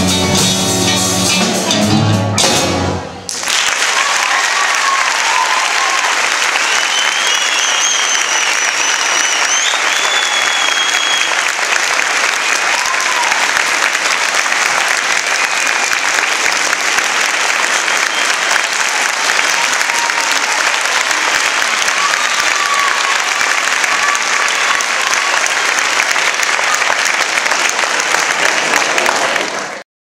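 A band of acoustic guitars, electric guitar and drum kit plays the last bars of a rumba and stops on a final chord about three seconds in. An audience then applauds steadily, with a high wavering whistle about eight to ten seconds in, until the sound fades out at the very end.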